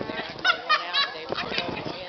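Birds, sounding like geese, give several short, high honking calls in quick succession.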